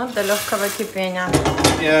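Mostly people talking, with a brief knock of a stainless-steel stockpot being picked up off a gas hob about halfway through.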